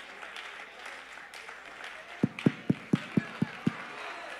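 Quiet room tone, then about halfway through a quick run of seven sharp, evenly spaced hits, about four a second.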